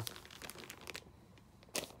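Plastic bags of folded fabric crinkling in short, scattered crackles, thickest at the start and again just before the end.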